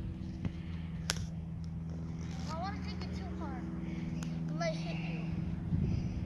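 A steady low motor hum runs throughout, with voices over it and one sharp knock about a second in.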